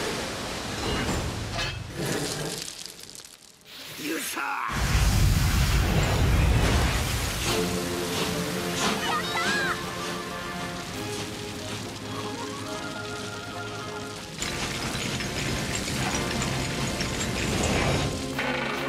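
Film soundtrack of mixed action sound effects and music. A heavy low crash about five seconds in follows a brief lull, and sustained music with held chords carries on after it.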